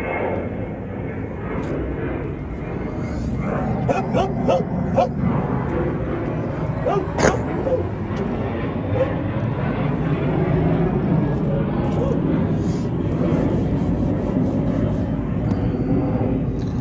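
Dogs barking and yipping in short bursts, a cluster about four to five seconds in and another near seven seconds, over a steady low rumble.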